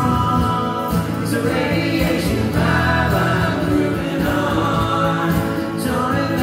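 Live band playing strummed acoustic guitars while several voices sing together, amplified through the stage PA.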